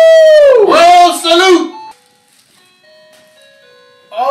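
Loud, drawn-out vocal exclamations whose pitch rises and falls. About two seconds in they stop, leaving a faint tune of steady single notes.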